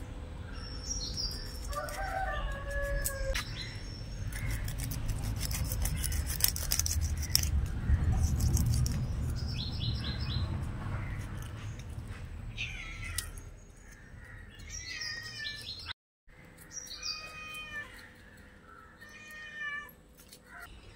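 A knife scraping scales off fresh fish, a dense run of rapid clicks a few seconds in. Short animal calls at intervals around it.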